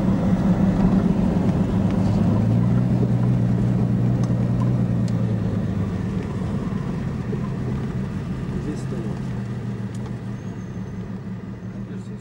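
Engine and road noise of a moving car heard from inside the cabin: a steady low drone that slowly fades toward the end.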